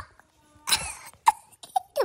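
A person's cough, followed by a few short, sharp vocal sounds.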